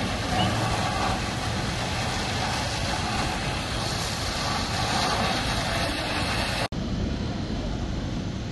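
Steady rushing noise of a fire hose spraying water onto steaming, burned-out lorry wreckage, over the running of engines, with faint voices. About two-thirds of the way in the sound cuts off abruptly and gives way to wind noise.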